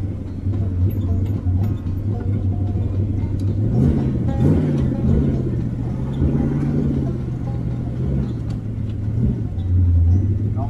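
Rat rod's engine running at low road speed, heard from inside the cab. Its note swells up and down twice around the middle, holds a little higher for a few seconds, then settles back.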